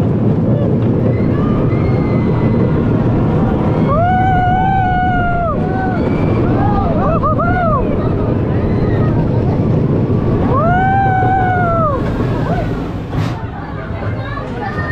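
Roller coaster train running along its track, a loud steady rumble, with riders letting out long yells about four seconds in, briefly again around seven seconds, and once more around eleven seconds. The rumble drops off near the end as the train slows.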